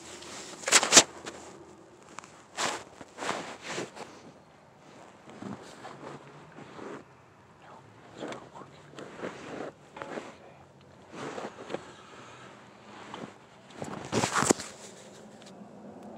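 Rustling, scraping and knocking of a phone being handled or jostled against fabric and car trim, in irregular bursts, with the loudest knocks about a second in and near the end.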